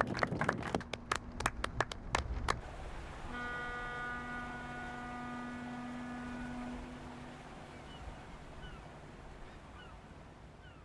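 A group of people clapping for about two and a half seconds, then a ship's horn sounding one long, steady blast of about three and a half seconds that fades away. A few faint, short falling calls follow near the end.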